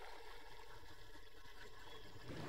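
Faint, steady background hiss with no distinct sounds: quiet ambience between lines of dialogue.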